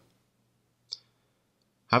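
A single short, faint click about a second in, between stretches of near-silence, with a man's voice starting to speak near the end.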